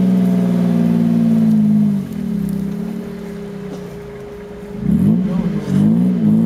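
Engine of an off-road 4x4 pulling hard at steady high revs, dropping to a quieter, lower note about two seconds in, then revving up and down again in short bursts near the end as it works through the rough, muddy ground.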